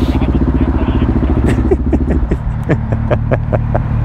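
Motorcycle engine idling close by: a steady, rapid low pulse as the bike creeps in at walking pace and stops.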